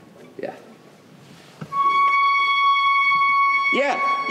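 A single high D-flat played on an orchestral instrument and held steady, one sustained note starting a little under two seconds in.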